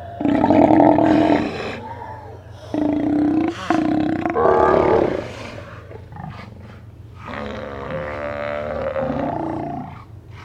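Steller sea lions roaring: four loud roars, three close together in the first five seconds and a longer one from about seven seconds in.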